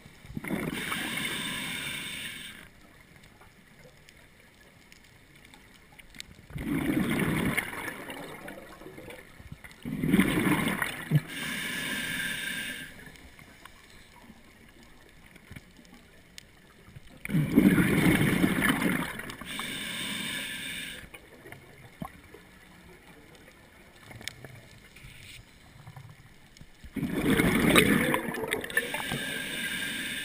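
Scuba diver breathing through a regulator underwater: each exhale is a bubbling rush of bubbles and each inhale is a shorter hiss, one breath about every ten seconds.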